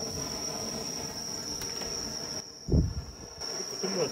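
Insects trilling steadily in one high, unbroken tone, with a brief low thump about two-thirds of the way through.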